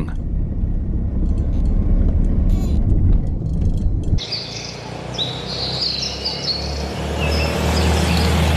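Steady low rumble of a car's engine and road noise heard inside the cabin. About four seconds in, it cuts to birds chirping outdoors over the low running of the vintage sedan's engine, which grows louder near the end as the car drives by on a dirt road.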